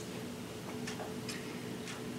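Quiet room tone with a steady low hum and a few faint ticks spread across the two seconds.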